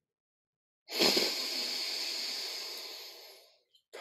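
A man's slow, audible inhalation through the left nostril with the right one held closed, as part of alternate nostril breathing (nadi shodhana). It is a breathy hiss that starts about a second in and fades away over nearly three seconds.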